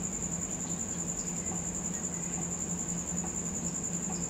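Faint scratching of a pen writing on paper, under a steady high-pitched tone and a low hum.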